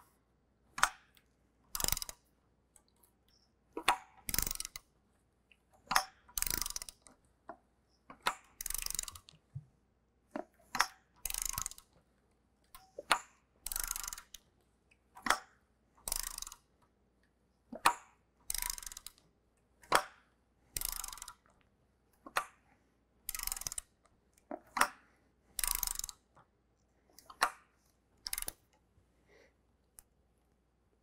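A hand ratchet clicking in repeated strokes, about one every two seconds, as the crankshaft of a GM 3.6L V6 is turned over by hand with newly installed timing chains, a check for piston-to-valve interference. The strokes stop shortly before the end.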